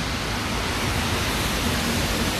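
Steady, even rushing noise of an outdoor city street, with no distinct events.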